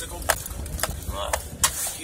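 A car driving on snowy streets, heard from inside the cabin: a steady low engine and road rumble, with a few sharp clicks and a brief bit of voice.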